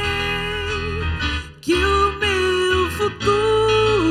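A woman singing a slow worship song into a microphone over instrumental accompaniment, holding long notes with vibrato, with a short break for breath about a second and a half in.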